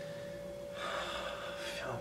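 A man's audible breath, a short breathy gasp about a second in, lasting about a second, as he gathers himself to answer. A faint steady hum runs underneath.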